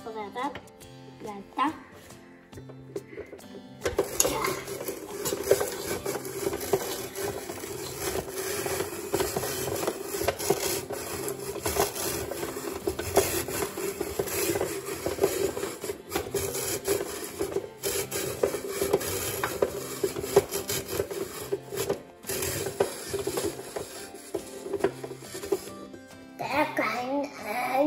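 Hand-cranked plastic spiralizer cutting a raw sweet potato into spiral noodles: a continuous grinding, scraping rasp with small irregular clicks, starting about four seconds in. Background music plays underneath.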